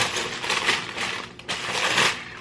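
Uneven rustling of packaging and fabric as a linen dress is handled and lifted out.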